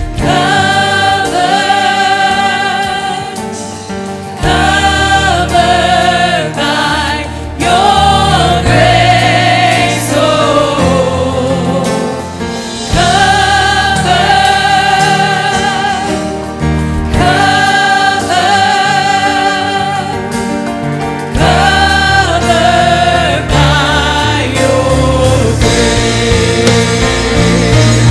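A church worship team of men and women singing a gospel song together into microphones, in held phrases of a second or two, over a live band with drums.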